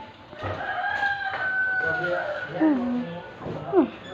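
A rooster crowing once in the background: one long held call that falls away at the end.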